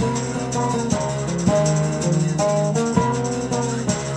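Live jazz-fusion band playing: a moving electric bass line with keyboard notes on top, over steady shaker percussion.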